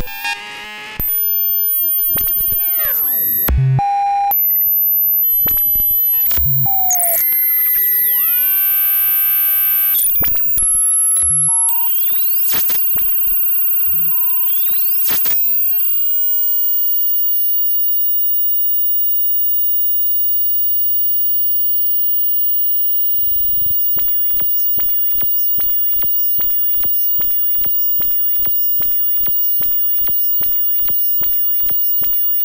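Ciat-Lonbarde Cocoquantus 2 synthesizer making glitchy electronic tones: chopped chirps, falling and rising pitch sweeps and clicks. About halfway through it drops quieter and settles into a steady high tone over a regular pulsing.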